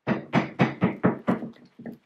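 Crinkling and tapping of stiff butterfly wings being handled and fitted onto a small plastic doll: a quick run of about eight short, sharp crinkles and taps, about four a second, that stops near the end.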